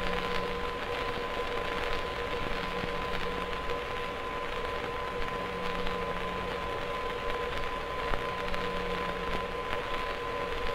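Steady hiss and faint crackle of an old film soundtrack, with a thin steady tone and a lower hum running under it.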